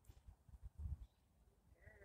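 Near silence, with faint low rumbles and, near the end, a brief faint high-pitched call.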